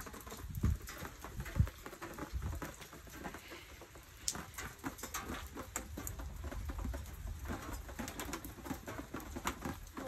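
Storm rain dripping and pattering close to the phone, with scattered sharp taps. Irregular low rumbling buffets on the microphone run underneath.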